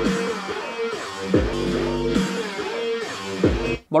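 Guitar-led music with a strong bass line played through a Tronsmart Bang Max Bluetooth speaker as a sound demonstration; it stops abruptly near the end.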